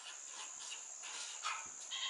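Faint squeaks and scratches of a felt-tip marker writing on paper, over a steady high hiss.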